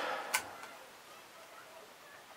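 One sharp click about a third of a second in, as the small panning rig frame and its parts are handled, followed by faint handling sounds.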